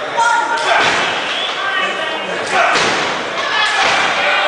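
Strikes landing in a wrestling match, about four sharp thuds spread over a few seconds, with voices calling out around them.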